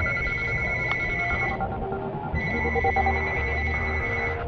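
Mobile phone ringing with an electronic trilling ring tone. One ring stops about one and a half seconds in, and the next starts just over two seconds in.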